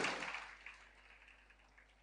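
Near silence: room tone in a pause of a man's speech over a podium microphone, his last word fading out in the first half second.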